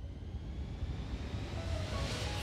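Steady road noise inside a car cruising at highway speed: a low rumble under an even hiss that grows louder near the end.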